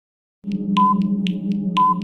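Countdown timer sound effect starting about half a second in: a steady low drone with about four ticks a second and a short beep once a second.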